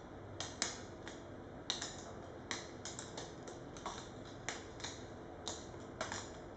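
Light, irregular clicks and ticks, two or three a second, from the thin metal rods of a hanging kinetic sculpture tapping against one another as they swing, over a faint steady hum.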